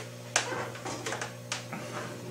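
A few small, sharp clicks and handling sounds from fingers working a small metal fishing snap swivel whose clip has been bent shut.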